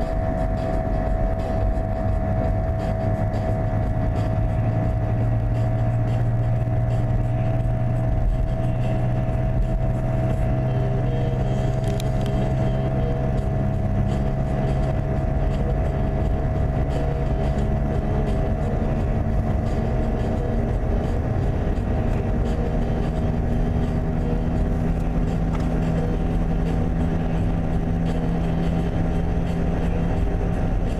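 Car driving at highway speed, heard from inside the cabin: a steady drone of engine and tyre noise with a constant hum above it.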